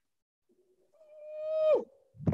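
A woman's voice singing or humming one held note that swells louder over about a second and slides down in pitch as it ends, heard over a video call.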